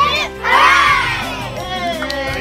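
A group of children shouting together in unison: a brief call at the start, then a long loud cheer from about half a second in that fades away.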